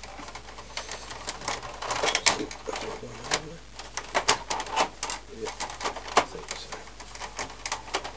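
Hard plastic casing of an Epson R265 printer being pressed and worked into place by hand, making a series of irregular clicks and knocks as the cover is fitted back over its pegs and clips.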